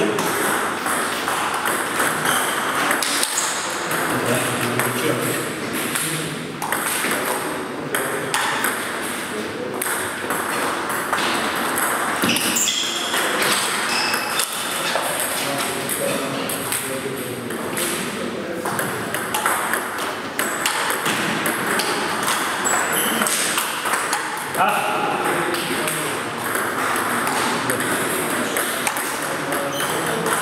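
Table tennis balls clicking again and again off bats and tables in rallies, from this table and the neighbouring ones in the same hall.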